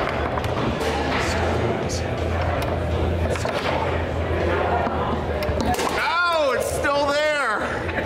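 Foosball in play: the ball being knocked and struck by the plastic men and rods, giving scattered sharp clacks and knocks over a busy hall's chatter and low hum. About six seconds in, a voice calls out twice, its pitch rising and falling.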